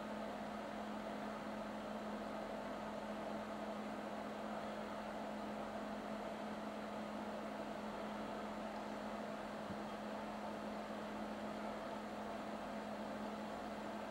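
A steady low hum over a constant hiss, unchanging throughout, with no distinct events.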